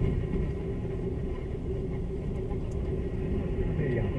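Steady road and engine noise of a moving car, heard from inside the cabin: a continuous low rumble.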